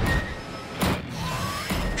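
Trailer sound design: a noisy whoosh with a sharp hit just under a second in, then a deep low rumble swelling near the end.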